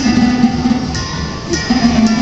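Harp notes ringing: one note held for about a second, then a brief note and another starting near the end.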